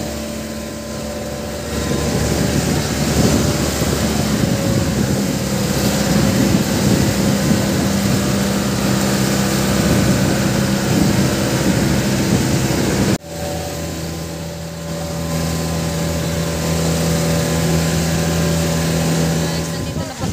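Motorised bangka outrigger boat's engine running steadily at cruising speed, with water and wind rushing past the hull. About two-thirds through there is a sudden break, and the engine resumes with a slightly lower note.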